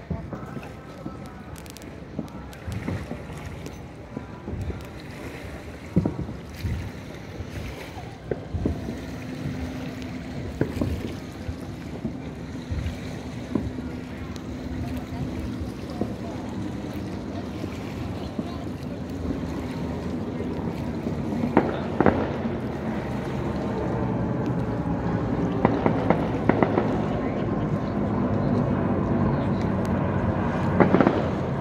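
Scattered distant firework bangs, a dozen or so single reports spread irregularly, over a steady outdoor background with a low engine drone that grows louder in the second half.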